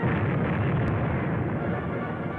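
A heavy blast of naval shellfire from a three-inch shell. It starts suddenly and rumbles away over about two seconds.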